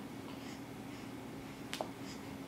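One sharp click, like a snap, near the end over a steady low room hum.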